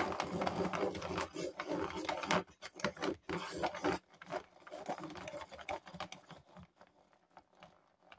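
Deli 0616B hand-crank rotary pencil sharpener being cranked, its cutter shaving a wooden pencil with a rapid run of small clicks and scraping. The sound thins out and grows quieter near the end as the point is finished.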